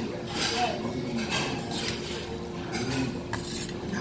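Stainless steel chopsticks stirring and lifting noodles in a stainless steel bowl of broth, clinking and scraping against the metal several times.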